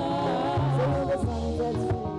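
Live worship band playing: several vocalists singing together into microphones over keyboard and drums, with a steady beat.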